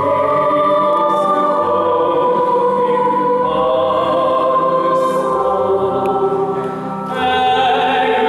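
A male solo voice singing a slow Christmas carol together with a youth choir, held notes in long phrases. The sound dips briefly between phrases about seven seconds in, then the singing resumes.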